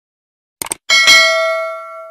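Subscribe-button sound effect: a quick cluster of mouse clicks, then a bright bell ding that rings on and slowly fades.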